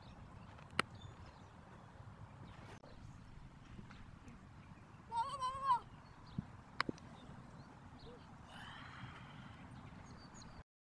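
Two sharp smacks of a softball, about a second in and again near seven seconds, over a low outdoor background, with a single high wavering call around five seconds in.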